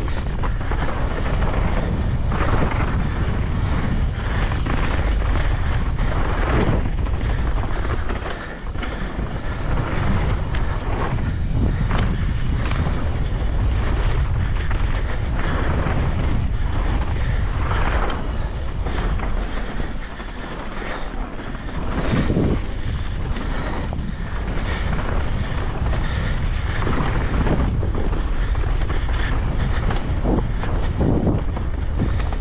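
Wind buffeting a helmet camera's microphone and the tyres of a mountain bike rumbling over a dirt and root trail at speed, with frequent knocks and rattles from the bike over bumps. The noise dips briefly about eight seconds in and again around twenty seconds.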